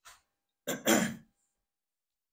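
A man clears his throat with a single short cough, about two-thirds of a second in, lasting about half a second.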